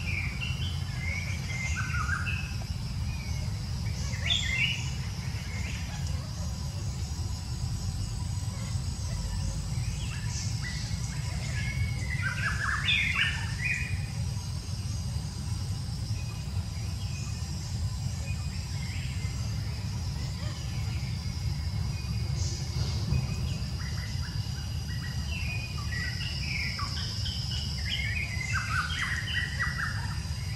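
Wild birds chirping in short scattered bursts, heaviest a little before the middle and near the end, over a steady high-pitched whine and a constant low rumble.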